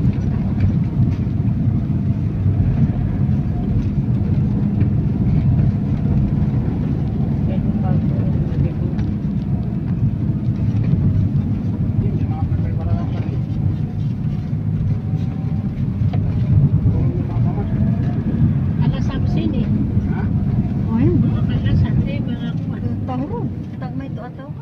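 Steady low rumble of engine and road noise inside a moving vehicle's cabin while it drives along a paved road, with faint voices in the background.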